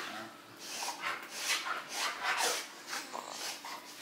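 A Rottweiler rolling and wriggling on its back on a rug, making repeated short breathy sounds, about two a second.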